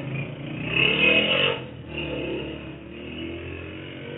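Motorcycle engine revving, rising then falling in pitch about a second in, over steady street noise in muffled, low-quality audio.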